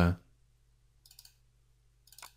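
A computer mouse button double-clicked, faint, about a second in.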